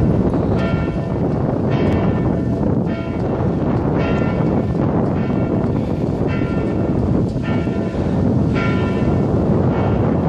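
The two middle church bells of Strängnäs Cathedral, tuned to D and F, swinging and striking in turn about once a second, ringing helgmålsringning, the Saturday-evening peal that rings in the Sunday. A heavy rumble of wind on the microphone lies underneath.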